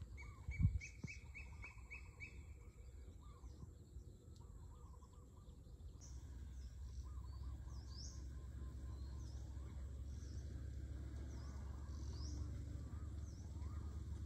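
Birds calling: a quick run of about seven repeated notes near the start, then many short chirps through the rest. A low thump about a second in, and a low rumble that grows from about halfway.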